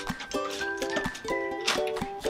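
Background music: a light melody of short, evenly held notes.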